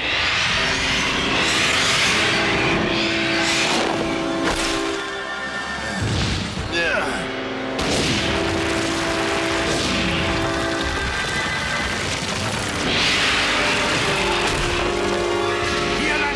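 Animated action soundtrack: dramatic orchestral music with held chords, over loud crashing and rumbling effects of a dinosaur falling among tumbling rocks, and dinosaur roars and screeches, one sliding down in pitch about six seconds in.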